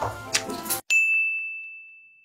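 Background music that cuts off abruptly a little under a second in, followed by a single high, bell-like ding that rings on and slowly fades: an end-screen chime sound effect.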